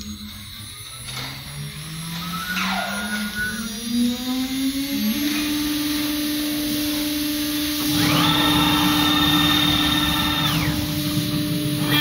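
The spindle of a metal-cutting CNC router spins up, its whine rising steadily in pitch for about five seconds and then holding at a steady speed. About eight seconds in, a higher multi-tone whine from the axis drive motors joins it for about two and a half seconds as the head travels over to the workpiece.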